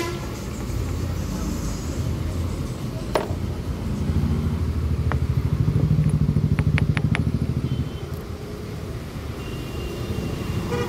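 A motor vehicle engine running close by in street traffic, swelling to its loudest about six to seven seconds in and then fading, over a steady low background rumble, with a few sharp clicks.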